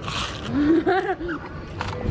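Straw slurping up the last of a drink from the bottom of an ice-filled plastic cup, a brief sucking hiss at the start, then a person's voice and laughter.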